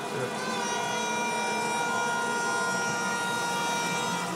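Car horn held down in one long steady blast, starting about half a second in and sounding for over three seconds.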